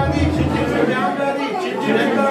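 Several people's voices talking over one another, with a low hum during the first second.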